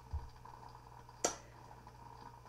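Quiet room tone with a steady low hum, a soft thump just after the start and one brief sharp click a little past the middle.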